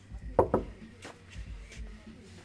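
Knuckles knocking on a wooden front door: a few knocks, the first two loudest and close together, then lighter ones.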